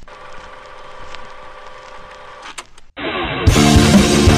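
Rock song intro: a quiet, steady sustained drone with a few faint clicks, then about three seconds in the full band comes in loud with drums, bass and electric guitar, muffled for the first half second before opening up to full brightness.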